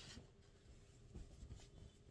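Faint rustling and rubbing of cotton lawn fabric as a shirt piece is handled and lifted off a sheet-covered table, with a few soft bumps in the second half.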